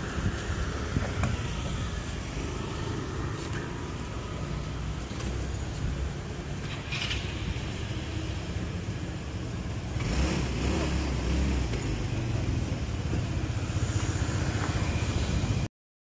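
Street sound dominated by a car engine running close by, with a low rumble that grows louder about ten seconds in; the sound cuts off abruptly near the end.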